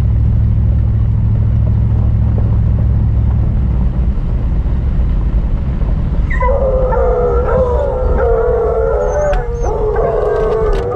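Pickup truck rumbling slowly along a dirt road, heard from inside the cab. About six seconds in, hounds start howling in long, wavering calls.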